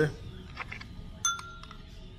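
A metal spoon clinks against a small ceramic bowl of garlic paste a little past a second in: a few quick sharp clicks with a short bright ring.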